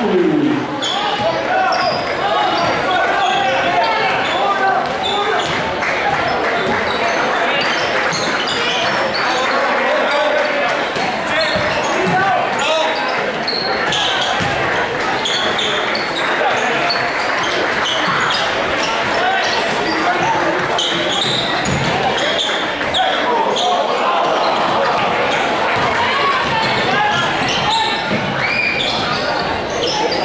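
Basketball dribbling and bouncing on a hardwood gym floor amid the steady chatter of spectators in a large gymnasium, with short high squeaks scattered through.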